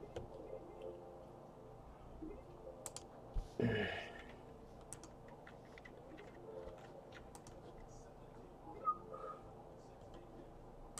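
Faint, scattered clicks of a computer keyboard and mouse, with one brief louder noise about three and a half seconds in.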